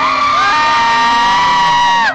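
Several voices hold one long note together over live music, sliding up into it at the start and dropping off together at the end.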